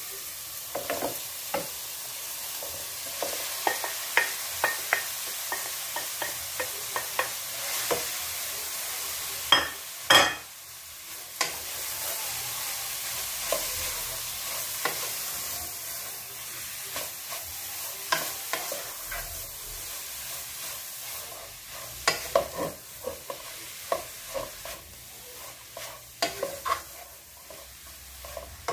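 Shredded cooked chicken frying in olive oil with sautéed onion and garlic, a steady sizzle, while a wooden spoon stirs it, scraping and tapping against the pot many times; one louder knock comes about ten seconds in.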